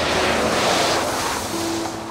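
A Chevrolet pickup truck drives through a large puddle, its tyres throwing up a long rushing splash of water that swells in the first second and fades away. Background music plays underneath.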